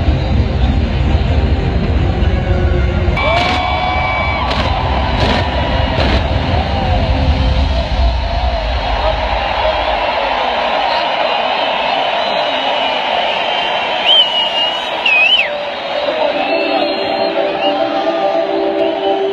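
Loud music over a large stadium crowd, cheering and calling out. A heavy bass drops away about ten seconds in, leaving the music and crowd higher and thinner.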